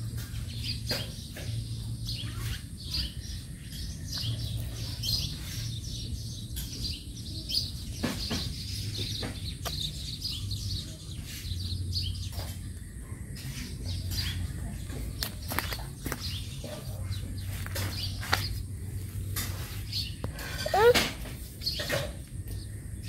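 Small birds chirping over and over, over a low steady hum. Near the end a louder, short call sweeps in pitch.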